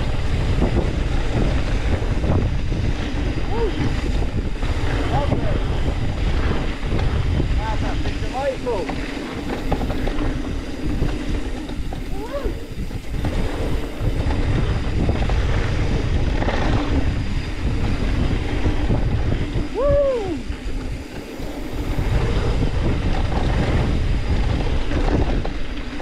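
Wind buffeting the camera microphone over the tyre rumble of a mountain bike riding down a dirt trail, with short tones that rise and fall in pitch every few seconds.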